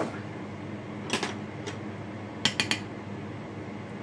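A few light clicks and taps as a black pepper container is handled over a metal kitchen tray: one about a second in, then a quick cluster of three about halfway through, over a steady low hum.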